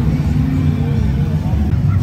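Low, steady engine rumble of slow-moving parade vehicles, ATVs and a pickup truck, passing close by, with spectators' voices over it.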